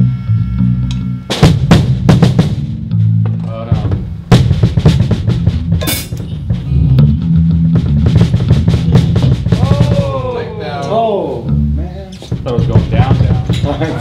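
Pearl drum kit played in a rock band rehearsal: a dense run of snare and bass drum hits with cymbals, over low sustained notes from the rest of the band.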